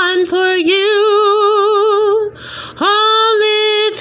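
A woman singing solo, holding long wavering notes with vibrato, with a short breath taken about two and a half seconds in before the next held note.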